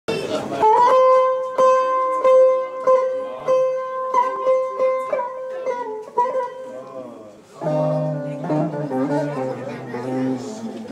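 Buzuq, a long-necked Kurdish lute, being played: a run of plucked notes ringing over a held high note, then, after a short dip, a fuller passage on lower notes about three-quarters of the way through.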